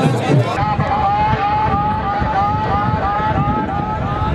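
A voice rapidly repeating a short pitched call, about two to three times a second, over a steady rumble of crowd and wind noise.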